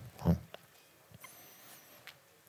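A short vocal sound from a man's voice about a quarter second in, then quiet room tone with a faint, wavering high-pitched tone in the middle.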